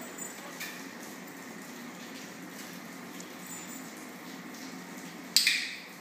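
A single sharp click from a dog-training clicker about five seconds in, marking the puppy's correct hold of its stay before the treat. Before it there is only a faint steady room hum and one soft tick near the start.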